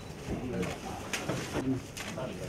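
Indistinct chatter of several people in a room, with a few brief sharp clicks.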